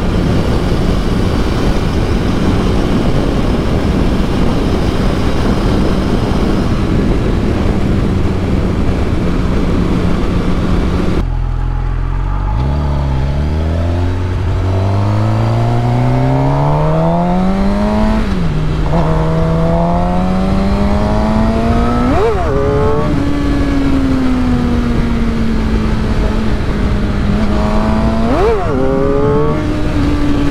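Suzuki GSX-R750 inline-four engine cruising steadily at highway speed under heavy wind noise. About eleven seconds in, the sound changes to the engine pulling hard from low revs, its pitch climbing through the gears with a drop at a shift about two-thirds through and short sharp rev spikes later on and near the end.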